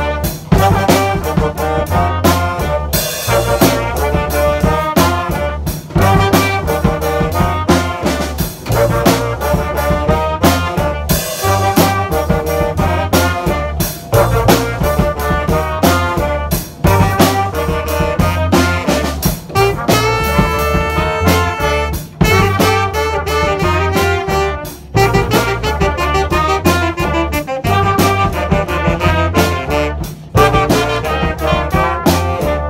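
Small live band playing an upbeat tune: two trumpets and a saxophone carry the melody over a steady, repeating electric bass line and a percussion beat. There are a few brief gaps between phrases.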